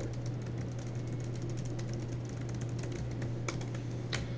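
Faint, irregular clicks of typing on a computer keyboard over a steady low hum of room tone, with a few sharper clicks near the end.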